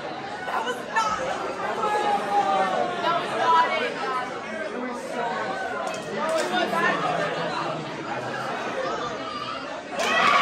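Crowd chatter: many people talking at once around tables in a room, their overlapping conversations blending into a steady babble with no single voice standing out.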